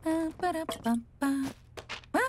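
A cartoon character's voice making a few short vocal sounds, each held at a steady pitch, in the first second and a half. A brief rising vocal sound follows near the end.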